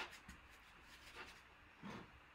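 Faint handling sounds: hands pressing and lifting a silk-screen transfer on a cutting mat, three soft brushing rubs in otherwise near silence.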